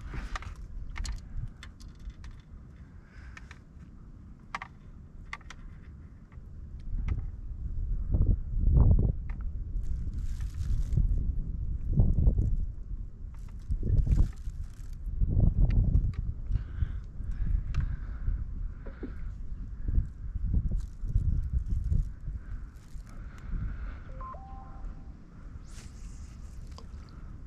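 Small clicks and rustles of fishing line and tackle being handled in a metal boat, with irregular low rumbles from about seven seconds in.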